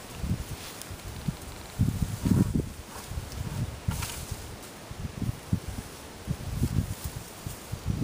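Leafy branches rustling and bumping as a white plastic bucket is worked up through the foliage of a shrub, with irregular low knocks from handling, the busiest stretch about two seconds in.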